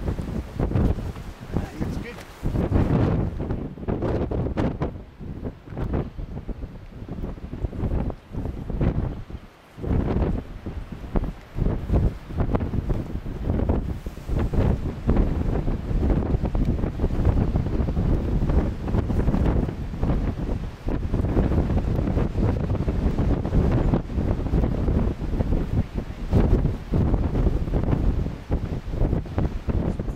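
Strong coastal wind buffeting the microphone: a loud, low rumble that rises and falls in gusts, easing off briefly about ten seconds in.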